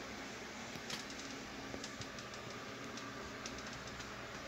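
Steady background hiss with a scattered series of faint clicks and ticks, the sharpest about a second in.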